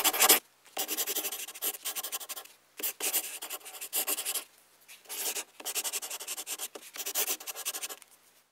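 A pen scratching across a drawing surface as a line drawing is sketched, in quick rapid strokes grouped into bursts with short pauses between them.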